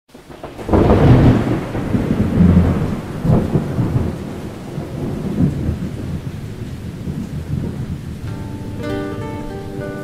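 Rain-and-thunder sound effect: a loud low thunder rumble that swells several times in the first few seconds and then dies down over steady rain. Near the end a guitar begins playing plucked notes.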